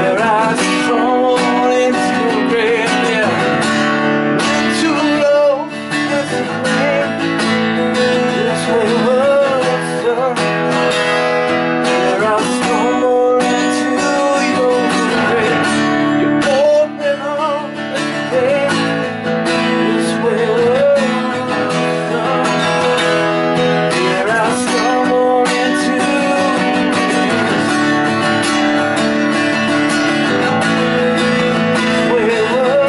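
Acoustic guitar strummed steadily in a song's instrumental stretch, with a wordless vocal line rising and falling over it at times.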